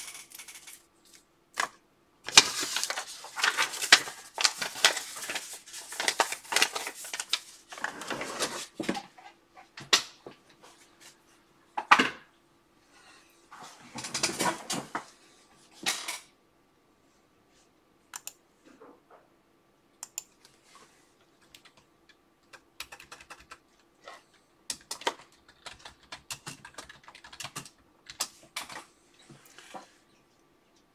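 Typing on a computer keyboard: fast runs of keystrokes through the first half, then scattered single keystrokes and clicks.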